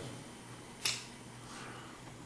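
A single sharp click about a second in, over quiet room tone.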